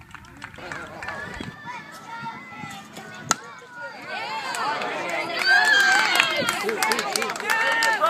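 A bat hits a baseball with one sharp crack about three seconds in, then spectators shout and cheer, growing louder as the batter runs.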